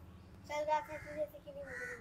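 A high-pitched, drawn-out vocal call lasting about a second and a half, starting half a second in, with its pitch sliding slowly downward.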